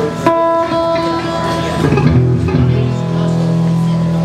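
Live electric guitar and bass guitar through amplifiers: a chord struck about a quarter second in rings on, and low bass notes come back in about halfway through.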